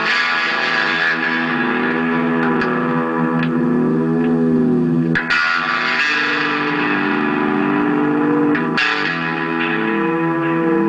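Electric guitar played through a Moog MF-102 ring modulator pedal: sustained chords ring on while the added tones glide steadily up and down in pitch under the pedal's sweeping modulation. New chords are struck about five seconds and nine seconds in.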